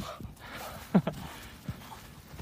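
A single short vocal sound that drops quickly in pitch, about a second in, over faint background noise, with a small tick near the end.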